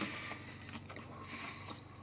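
Faint chewing of a mouthful of cooked shrimp, with a few small soft clicks, over a steady low hum.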